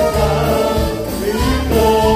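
Live morenada music: a band playing with voices singing the melody over a low beat that repeats about twice a second.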